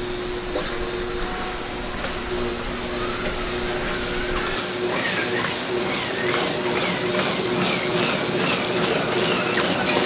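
Amplified electric guitar sounding held, droning notes while the guitar is swung about to drag a paintbrush taped to its headstock across a canvas. About halfway through a higher wavering tone joins, rising and falling over and over, a little under twice a second.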